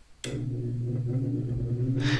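1938 General Electric 12-inch electric fan running: a steady low motor hum that starts suddenly a moment in.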